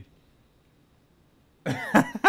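Near silence, then about one and a half seconds in a burst of laughter starts, in short pitched pulses.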